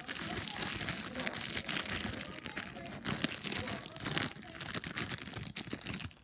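Very sticky slime being handled and dropped into a cardboard box: a dense, irregular run of small crackling, crinkly clicks.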